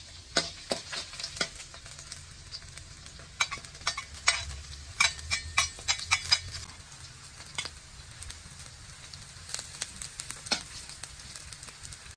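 Garlic and sliced lemongrass sizzling in hot oil in a wok, with frequent sharp clicks and scrapes of a metal spatula stirring against the wok.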